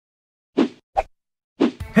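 Three short hits, spaced about half a second apart, followed by music starting just before the end.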